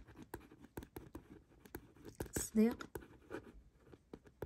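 Pen writing on paper: a quick run of small scratches and taps as Arabic words are handwritten.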